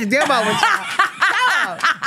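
Two women laughing together, broken up by a few spoken words.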